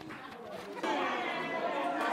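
Chatter of several students' voices talking over one another in a classroom, fainter for the first second and then louder.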